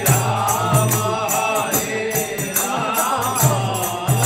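Bengali bhajan kirtan: a group of voices chanting a devotional melody over the deep strokes of a mridanga (khol) barrel drum and small hand cymbals (kartals) struck in a steady rhythm, with hand clapping.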